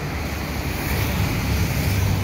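Wind buffeting the microphone, with a low rumble that grows stronger about a second in.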